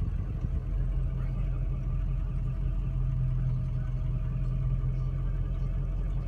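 Inside the cab of a 2003 Ford F-350, its 6.0-litre turbo-diesel V8 running at idle with a steady low hum.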